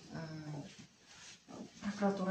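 A person speaking, with a short pause of about a second in the middle.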